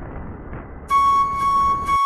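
Low rumble of a motorcycle ride, engine and wind on the camera, then about a second in a steady high note of background music comes in suddenly and holds.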